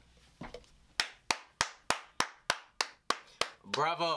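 One person clapping hands in applause, about nine slow, evenly spaced claps at roughly three a second, starting about a second in. A man's voice comes in near the end.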